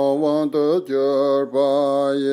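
A single male voice chanting Tibetan prayers to Tara in long, steady held notes, broken three times by short pauses.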